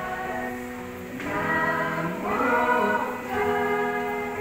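A small group of singers, a man and several women, singing a church song together, holding long notes and moving between them.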